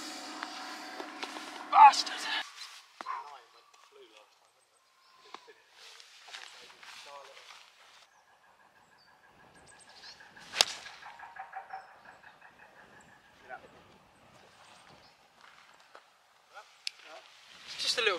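A golf club striking the ball on a tee shot: one sharp crack about ten and a half seconds in. A short, loud shout comes about two seconds in, and faint, scattered outdoor sounds fill the rest.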